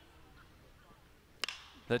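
Metal baseball bat striking a pitched ball: one sharp crack about a second and a half in, hit hard into center field, heard over faint ballpark background.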